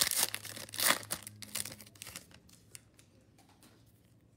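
Foil trading-card pack wrapper being torn open and crinkled, loudest in the first second, then dying away to a few light ticks from the second half on.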